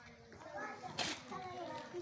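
Faint speech: a child's voice murmuring softly.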